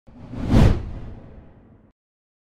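A whoosh transition sound effect with a deep low rumble, swelling to a peak about half a second in and then fading away before two seconds.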